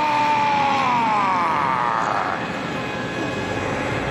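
Synthesized cartoon sound effect for Monstar's transformation: a loud, siren-like tone that holds, then glides down in pitch over about two seconds, leaving a steady rushing background.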